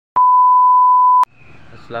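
A single loud electronic beep: one steady pure tone lasting about a second, starting and cutting off abruptly, followed by faint background hiss.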